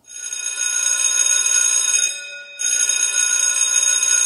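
An outro sound effect: a bright, metallic bell-like ringing made of many high tones. It sounds twice, each ring holding for about two seconds, with a short break after two seconds.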